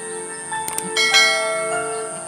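A bell-like chime, a few clicks and then a ringing chord that fades slowly, starts about a second in over background music, matching the subscribe-button animation's bell.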